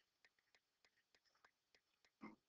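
Near silence: room tone with faint, scattered short ticks.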